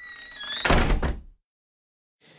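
A wooden door squeaking on its hinges as it swings, then slammed shut with one loud, heavy thud about two-thirds of a second in.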